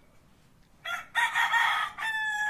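A rooster crowing, starting about a second in with a harsh call.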